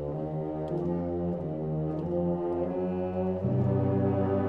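Orchestral music: low brass holding slow, sustained chords, moving to a new, louder chord about three and a half seconds in.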